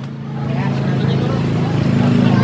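An engine running steadily at a constant pitch, growing a little louder in the first half second, with crowd voices over it.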